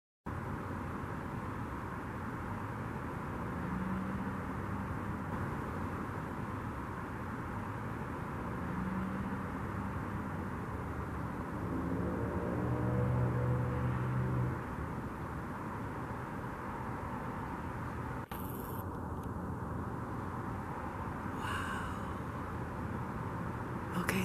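Steady outdoor background hush with a faint low hum that swells a few times, loudest about halfway through, and a brief click and hiss later on; no helicopter rotor chop.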